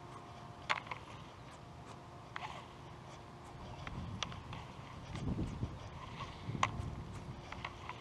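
Fishing rod and reel handled during a lure retrieve: sharp clicks and knocks every second or two over low rumbling handling noise, with a faint steady hum underneath.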